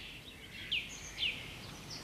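Birds chirping in short, high, falling notes, two of them about half a second apart, over a faint steady outdoor hiss.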